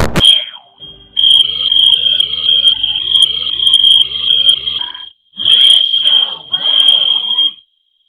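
Heavily distorted, pitch-lowered audio of a cartoon logo sequence. A loud noise burst ends just at the start, then a steady high whine plays over garbled, wobbling voice-like sounds. It cuts out briefly about five seconds in, resumes, and stops shortly before the end.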